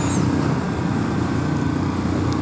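Royal Enfield Classic 500's 499cc single-cylinder engine running steadily at full throttle at about 100 km/h, with wind and road noise. The engine is in a flat spot, holding speed and not pulling any harder.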